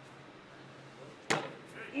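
A thrown cornhole bag landing on the wooden board: one sharp slap just over a second in, over a low steady hum.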